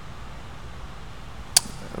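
Steady low room hum, with one short sharp click about one and a half seconds in.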